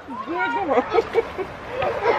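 Background human voices: a drawn-out vocal sound with a wavering pitch, then a run of short syllables like talk or laughter.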